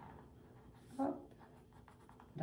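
Faint scratching of a drawing stick stroking across paper in short strokes, with a brief vocal sound about a second in.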